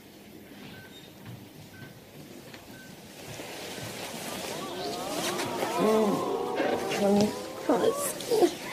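A hospital patient monitor beeps softly about once a second. From about three seconds in, a studio audience's reaction swells up, with many voices whooping and hollering, loudest near six seconds.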